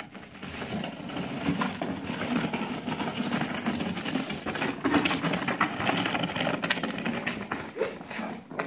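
Cardboard boxes being shoved and scraped across a gritty concrete driveway by a German Shepherd's nose, with paws scuffing on the grit: a continuous rough scraping with many small clicks and rattles.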